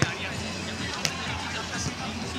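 Hands striking a volleyball in a beach volleyball rally: a sharp slap at the start and a second, lighter one about a second later, as the ball is passed and set, over background music and voices.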